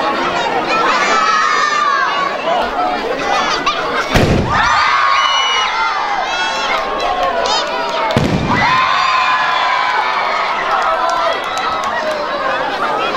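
Two firework shells fired from a rack of launch tubes, each a loud thump with a short low rumble, about four seconds apart. A crowd, children among them, shouts and cheers around each one.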